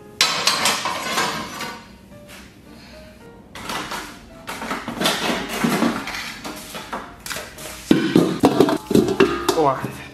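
Metal tongs clanking against a metal bucket and the iron rings of a stove top: a run of sharp metallic knocks and scrapes in two bursts, with background music coming in near the end.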